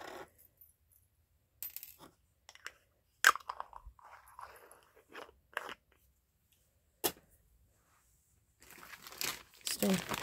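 Small metal pieces clicking and rattling in a small plastic jar as it is handled, with a few sharp clicks, the loudest a few seconds in. Near the end a plastic bag crinkles.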